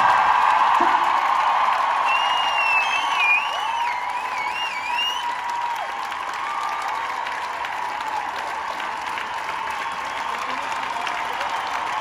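Large arena crowd applauding and cheering after a concert, loudest at the start and easing off slightly. A shrill, wavering high call rises above the crowd a couple of seconds in.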